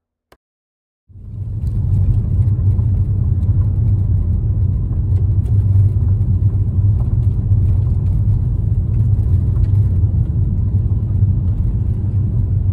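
A car being driven, its engine and tyre noise a steady low rumble that starts suddenly about a second in, after a moment of silence.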